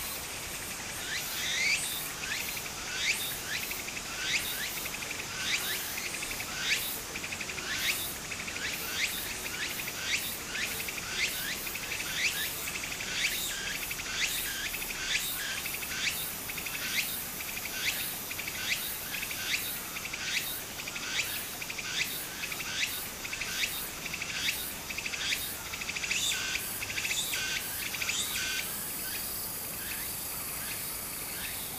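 Cicadas calling: a long run of short repeated calls, about one and a half a second, over a steady high buzz. The calls stop shortly before the end, leaving the buzz. A shallow stream trickles faintly underneath.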